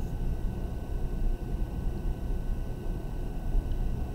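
Steady low background rumble, with no distinct events.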